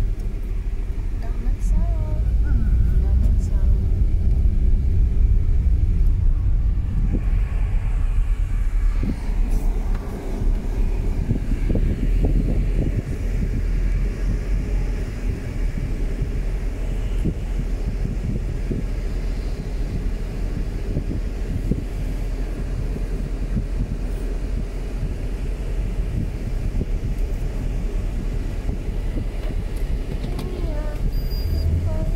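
Steady low rumble of a car's engine and tyres heard from inside the cabin while it drives slowly.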